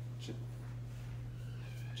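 A steady low electrical hum with a faint click early on and light paper handling near the end as a handout sheet is lifted.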